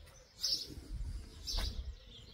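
A bird chirping outdoors, two short high calls about a second apart, over a low rumble.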